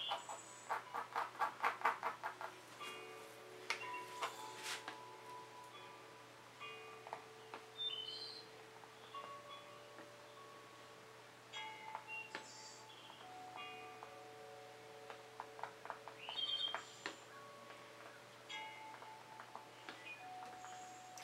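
Faint, slow chime-like music holds long notes that change pitch every few seconds. In the first two seconds a fine paintbrush dabs dots of acrylic paint onto canvas as a run of quick light taps.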